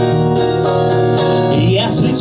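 Acoustic guitars strumming chords in a live acoustic rock song, played in the instrumental gap between sung lines.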